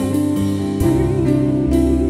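Gospel worship music: a woman sings a long wavering note into a microphone over sustained instrumental chords and a bass line.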